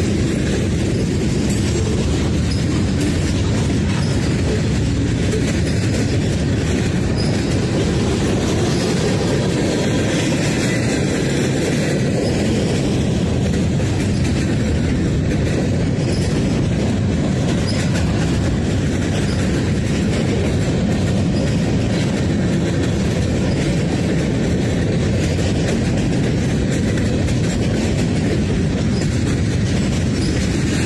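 A mixed freight train of boxcars, covered hoppers and tank cars rolling past, its steel wheels running on the rails in a loud, steady noise that holds throughout.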